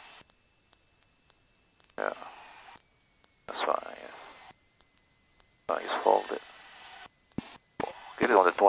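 Light-aircraft headset intercom during touchdown: short bursts of muffled voice and breath that cut in and out sharply, as the intercom's voice-activated squelch opens and closes, with dead silence between them. A faint, thin, high tone runs underneath and drifts slightly lower in pitch.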